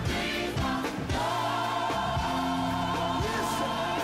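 Gospel song with a choir singing over band accompaniment; about a second in the voices settle into a long held chord.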